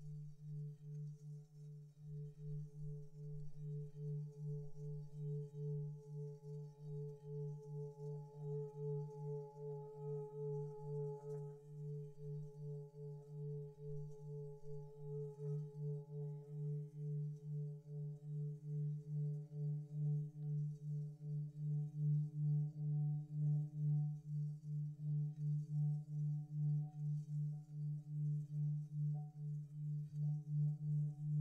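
Metal singing bowl holding one low sustained tone with a few fainter ringing overtones above it, the tone wavering in a slow pulse about twice a second. It swells somewhat louder in the second half.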